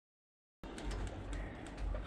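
Dead silence for about the first half second, then faint outdoor background noise with a low rumble and a few light clicks, ahead of the next spoken clip.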